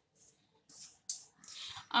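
A hand stirring and rubbing dry pearl millet flour mixed with salt in a stainless steel bowl: a few short, soft rustling swishes.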